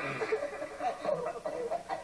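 A man chuckling and snickering in short bursts, heard through a TV speaker.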